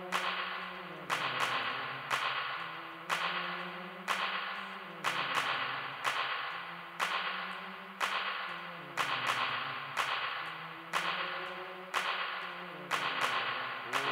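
Live band music: a slow, steady beat of sharp snare-like hits about once a second, each ringing away, over a low note that slides downward every four seconds or so.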